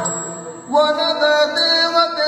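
Yakshagana bhagavata (lead singer) singing: the drumming falls away at the start, and about two-thirds of a second in a man's voice begins a chant-like line of long held notes.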